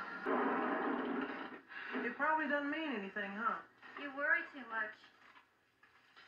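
Film soundtrack playing from a screen: a noisy rushing stretch, then a voice speaking in two short stretches, falling quiet near the end.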